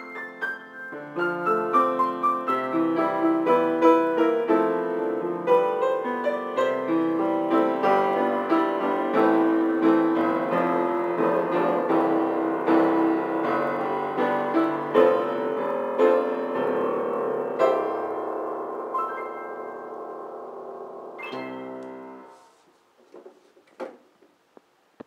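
Weber seven-foot-six grand piano, newly restrung, played by hand: a flowing passage of notes and chords, ending with a final chord about 21 seconds in that rings and fades away.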